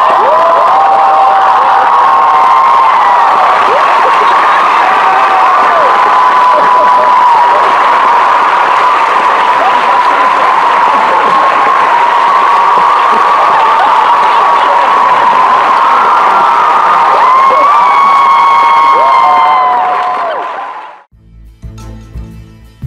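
A large audience cheering, screaming and whooping with applause, loud and unbroken. It fades out about twenty seconds in, and quiet music starts right at the end.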